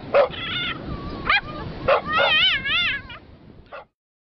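Boston terrier crying: a few short, high yips, then a long whine whose pitch wavers up and down about two seconds in, and a last yip near the end before the sound cuts off.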